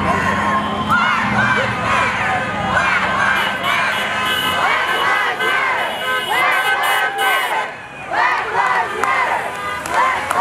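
A crowd of protesters cheering and shouting at passing cars, many voices overlapping, with a short lull about eight seconds in. A passing pickup truck's engine runs under the voices at the start.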